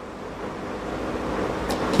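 Steady rushing background noise that grows slowly louder through a pause in speech.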